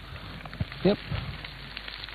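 Omelette frying in a pan on the stove, a steady sizzle with faint crackles.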